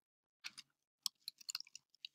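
Faint computer keyboard keystrokes typing a short search term: a couple of key clicks about half a second in, then a quick run of clicks from about one second to just before the two-second mark.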